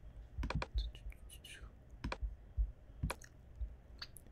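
Computer mouse and keyboard clicks: a quick run of clicks about half a second in, then single clicks near two and three seconds, with faint softer sounds between them.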